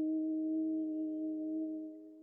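A sustained ringing tone, a low steady note with higher overtones, dying away in the last half second.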